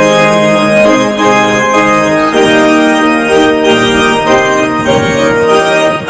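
Organ music: full held chords that change every second or so.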